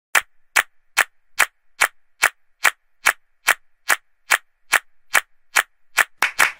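Sharp percussive clicks alone in a steady beat, about two and a half a second, counting in a song.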